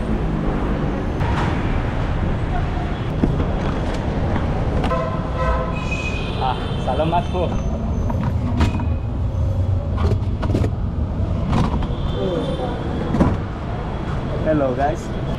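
Busy city street noise: a steady traffic rumble with people talking nearby and a few sharp knocks, and a brief high tone about six seconds in.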